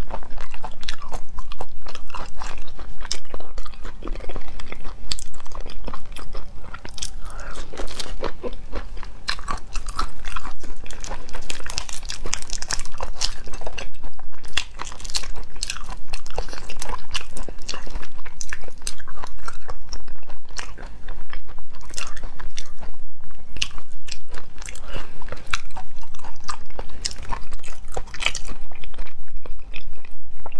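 Close-miked eating of large prawns: wet chewing and crunching, with dense crackling as the tough, unmarinated shells are peeled off by hand.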